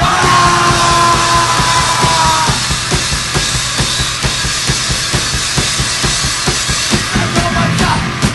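Heavy metal track with rapid, dense drumming under loud guitars; a high held note slides slightly downward over the first couple of seconds.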